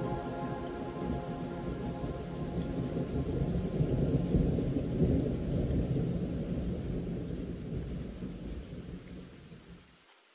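Rolling thunder over steady rain, swelling to its loudest about halfway through and then fading away to nothing. The last soft music notes die out at the very start.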